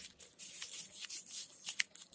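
Paper rustling and crinkling in the hands in a string of short, irregular scratchy strokes as it is handled and folded.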